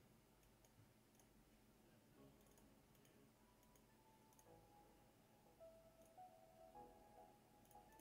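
Near silence, with a few faint computer mouse clicks and very faint music in the background.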